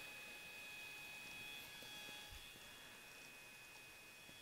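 Near silence: room tone with a faint steady high-pitched hum, and one soft low thud a little past halfway.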